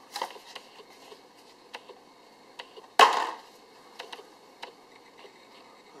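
Hands handling a plastic-covered foam package tray and steel RC driveshafts: scattered light clicks and rattles, with one sharp knock about halfway through.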